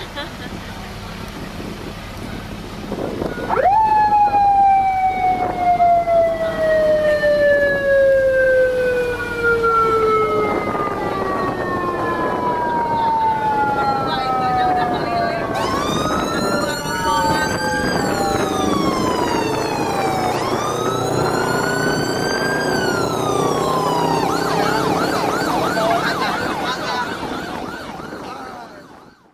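Vehicle siren: one long falling tone starts about three seconds in. Two slow rising-and-falling wails follow, and it ends in a fast warbling yelp near the end, over the chatter of voices.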